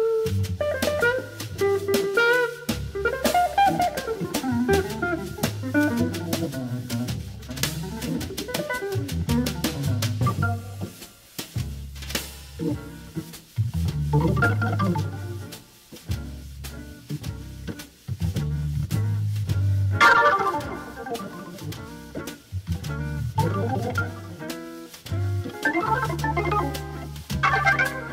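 1960s jazz organ-combo recording: Hammond organ played over a drum kit's steady cymbal strokes, with deep organ bass notes underneath.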